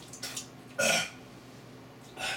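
A man's single short, loud throat sound, between a burp and a cough, about a second in: his reaction to dry ground cinnamon in his mouth and throat during the cinnamon challenge.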